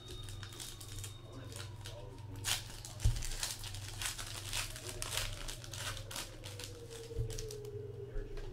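Crinkling and crackling of a trading-card pack's wrapper as it is torn open and the cards handled, thickest through the middle few seconds, with a couple of soft knocks on the table. A steady low electrical hum runs underneath.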